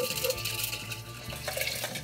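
Mixed cocktail poured from a glass into a metal shaker tin over ice, a steady splashing pour that eases off near the end.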